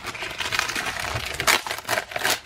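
Clear plastic wrapper crinkling and crackling as hands work a planner refill pad out of it, with a couple of sharper crackles about one and a half seconds in.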